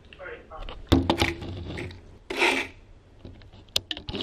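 Handling noise as the camera is picked up and moved: a sharp knock about a second in, rubbing and scraping through the middle, and another click near the end.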